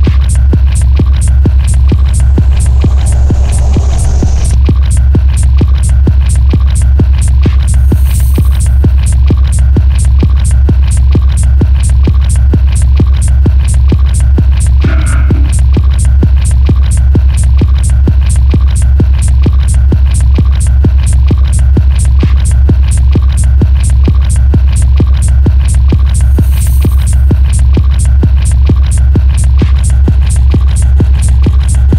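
Hard techno track in a DJ mix: a heavy, droning bass under a steady, fast kick-drum beat, with a brief high swish about eight seconds in and again near the end.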